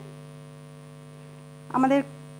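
Steady electrical mains hum: a low constant tone with fainter steady tones stacked above it. A short spoken syllable comes in near the end.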